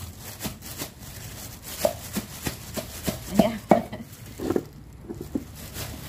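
A pestle pounding sliced chillies in a mortar covered with a plastic bag: a run of irregular knocks, at times two or three a second, loudest around the middle.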